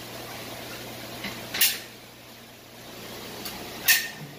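Metal caulking gun laying a bead of black aquarium silicone: two short sharp clicks from the gun, one about a second and a half in and one near the end, over a steady low hum.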